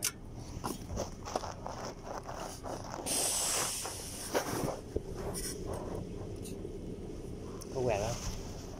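Scattered clicks and knocks of test gear being handled, with faint voices in the background, and a sharp hiss lasting about a second, starting about three seconds in.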